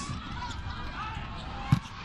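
Arena crowd noise during a volleyball rally, with one sharp smack of the ball being hit hard a little before the end.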